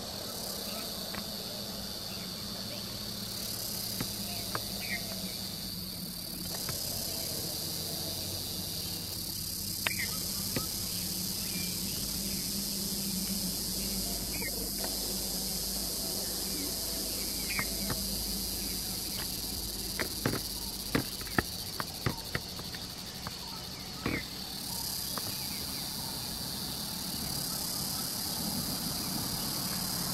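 Steady high-pitched drone of an insect chorus, with a few short chirps and a cluster of sharp clicks about two-thirds of the way through.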